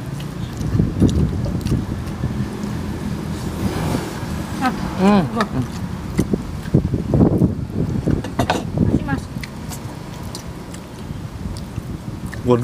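Close-miked sounds of people eating spicy chicken feet and rice by hand: chewing and small clicks of fingers and food, with a short hummed murmur about five seconds in. A steady low background rumble runs underneath.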